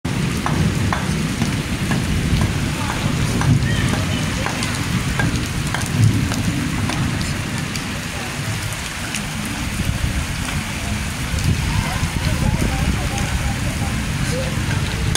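Steady heavy rain falling on a flooded street, with scattered sharp ticks of drops over a low rumble.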